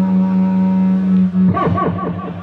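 A wind instrument holding one long steady low note, which stops about one and a half seconds in; voices come in after it.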